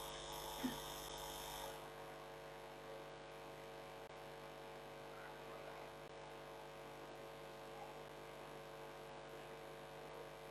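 Faint, steady electrical mains hum under quiet room tone, with a brief soft sound just under a second in.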